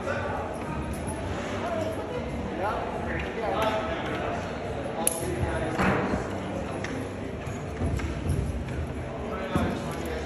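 Indistinct voices and chatter echoing in a large indoor hall, with one sharp click about five seconds in.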